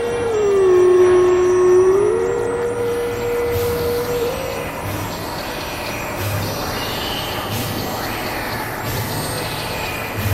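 Experimental synthesizer drone music. In the first few seconds a single synth tone slides down, holds, then glides back up and sustains over a dense hissing noise bed, with soft low pulses coming at irregular intervals.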